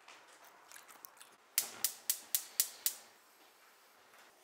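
Spark igniter on a gas range burner clicking six times, about four clicks a second.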